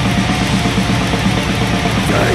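Blackened death metal playing: heavily distorted electric guitars over fast, driving drums, an instrumental stretch without vocals.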